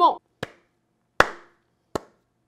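Slow handclapping: three sharp single claps about three-quarters of a second apart.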